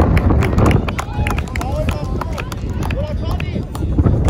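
Outdoor youth football match: children's voices calling and shouting across the pitch, over scattered sharp knocks and footfalls and a steady low rumble.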